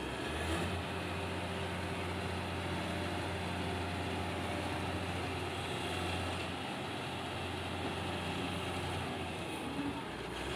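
Diesel engine of a Malkit 997 self-propelled combine harvester running with a steady low hum, picking up slightly about half a second in and holding level.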